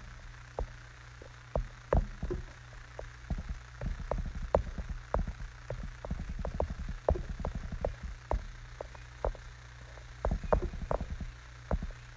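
A run of irregular light taps and clicks, coming quickly in clusters a few seconds in and again near the end, over a steady low hum.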